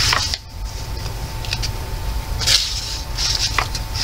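Thin, single-sided copy-paper pages of a thick coloring book being turned and handled, rustling in short bursts: one at the start, another about two and a half seconds in, and more near the end.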